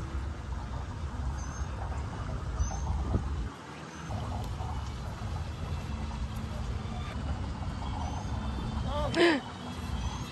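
Outdoor ambience: a steady low rumble with a few short, high bird chirps scattered through it. Near the end there is a brief vocal exclamation.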